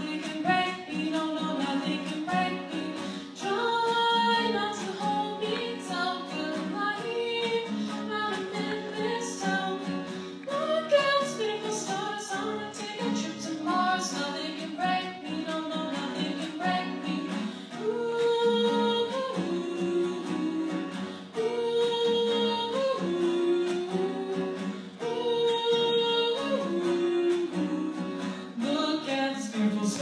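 A woman singing a pop song with held notes over a guitar accompaniment.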